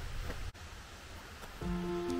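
Faint, low outdoor ambience that drops away suddenly about half a second in, followed by gentle background music with held notes coming in near the end.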